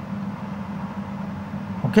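Steady low background hum with a faint hiss, running through the pause. A short spoken 'okay' comes at the very end.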